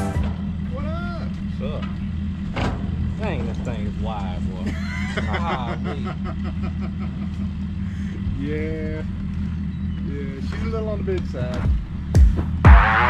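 Boat's outboard motor idling steadily, with faint voices talking over it.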